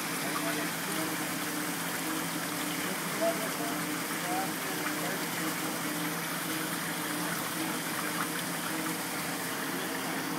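Steady rush of flowing water at a fish lift trap, with a low steady machinery hum underneath.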